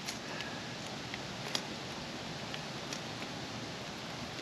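Faint handling noise: a few light clicks and taps as a plastic antenna matching box is turned over in the hands, over a steady low hiss.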